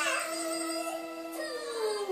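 A toddler's wordless, howl-like singing along with music: a held note fades, then her voice slides down in pitch near the end.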